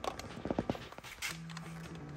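A few light metallic clicks and taps as parts of the outboard's carburetor linkage and hoses are handled with a hand tool, then a held hum that runs into speech.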